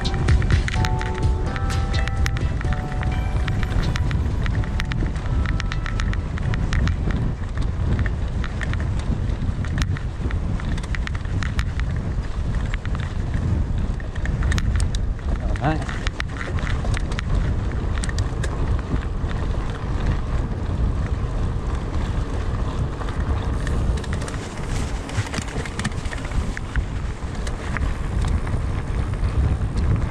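Hardtail mountain bike ridden along a dirt trail: a steady rush of wind on the action camera's microphone, with tyre rumble and a constant patter of rattling clicks from the bike. Background music with held notes fades out within the first few seconds.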